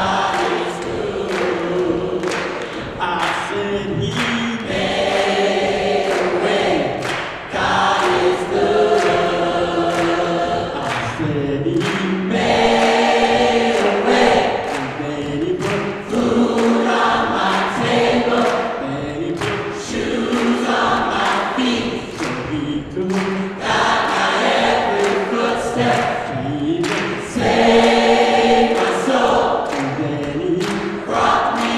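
Gospel choir singing in harmony, phrases of long held chords over a steady beat.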